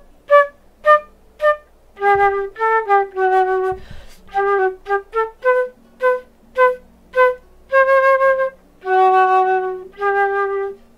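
Silver concert flute playing a simple G-major tune in its low register. Short detached notes, about half a second apart, alternate with longer held notes; there are two held notes near the end.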